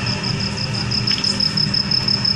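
A steady low mechanical hum with a high tone pulsing about six times a second over it.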